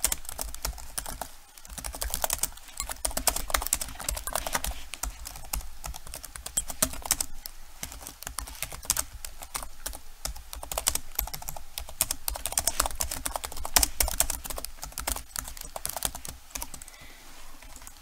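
Fast typing on a computer keyboard, a dense, irregular stream of key clicks throughout.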